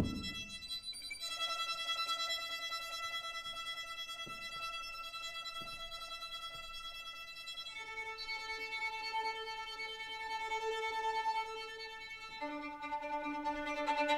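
Solo violin bowing long, held notes that step down to a new, lower pitch about a second in, again just past halfway, and again near the end. A short low thud sounds at the very start.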